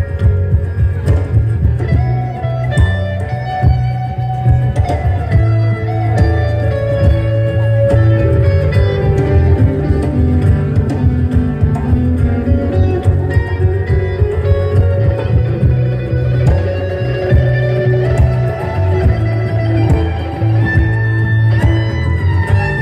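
Live band playing an instrumental passage: electric guitar, upright double bass, drums, acoustic guitar and fiddle, with a strong bass line under melodic string lines.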